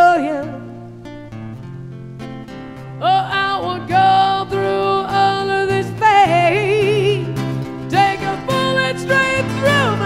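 A woman singing a slow pop ballad live over guitar accompaniment. After a softer passage in the first few seconds, the voice comes back in about three seconds in with long held notes and wavering runs.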